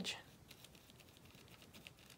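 Faint, irregular soft ticks and scratches of a fine paintbrush dabbing paint onto crepe paper.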